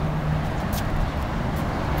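Steady outdoor background noise of vehicles, with a low steady hum in the first part and a faint click or two.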